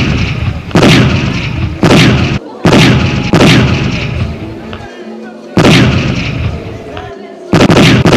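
A series of about six loud booms from Iron Dome's Tamir interceptor missiles, coming in quick succession at uneven gaps. Each boom dies away over a fraction of a second.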